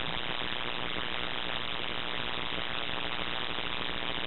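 Steady hiss and low room noise from the sound system, with no distinct events.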